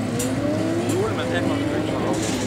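Spectators chatting over a car engine running nearby, its pitch rising slowly and steadily.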